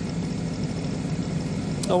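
Steady drone of a helicopter's engine and rotors, heard inside the cabin through a headset boom microphone.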